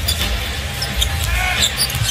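A basketball dribbled on a hardwood court, several bounces over a steady low rumble of arena crowd noise.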